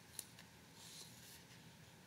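Faint rustle of paper book pages being leafed through, with a small click near the start and a soft brush of paper about a second in.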